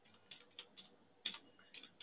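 Faint computer keyboard typing: a handful of short, irregular keystrokes.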